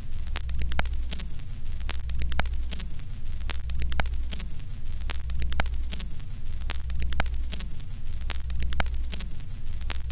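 Vintage film-countdown sound effect: a steady low hum under crackling static, with sharp clicks a little over twice a second, like an old projector running.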